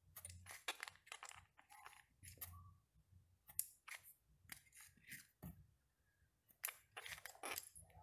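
Faint scattered clicks and small metallic ticks of a steel digital caliper's jaws being slid and closed on a small plastic 3D-printed cube, with a few soft knocks as the cube is handled.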